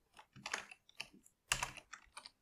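Computer keyboard keys pressed in a short, uneven run of keystrokes as a word is deleted from a text field and retyped.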